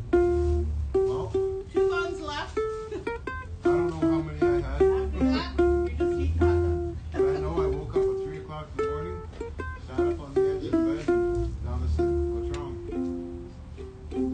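Ukulele played as a melody of single plucked notes, each ringing briefly, note after note without pause, over a low rumble.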